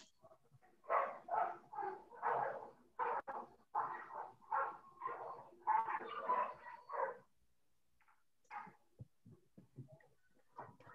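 A dog barking repeatedly, two to three barks a second for about six seconds, then stopping, picked up over a video-call microphone.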